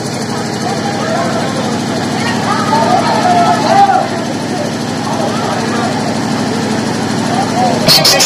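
A motor running steadily at an even pitch, with people's voices talking over it.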